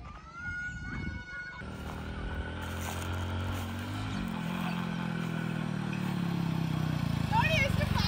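Small commuter motorcycle approaching, its engine growing steadily louder as it nears, with the engine note stepping up in pitch about four seconds in. Voices call out near the end as it arrives.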